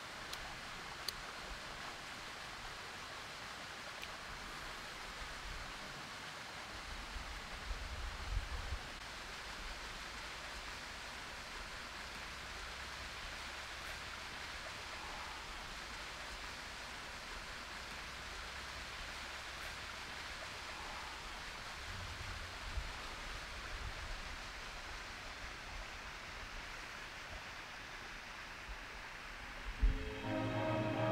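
Faint steady outdoor ambience of breeze and rustling, with low rumbles of wind on the microphone about eight seconds in and again about twenty-two seconds in.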